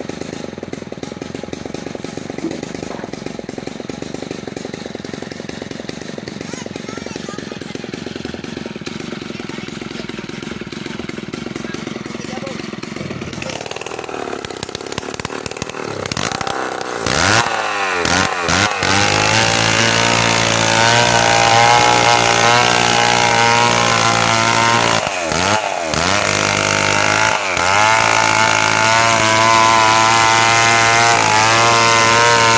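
About halfway through, a Stihl chainsaw starts a long lengthwise cut through a wooden plank. It runs at high revs, and its pitch dips and recovers a few times as the chain bogs in the wood. Before that there is a quieter stretch of steady background noise.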